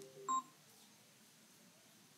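A short electronic beep about a third of a second in, closing a brief sequence of chime-like tones, then only faint room tone.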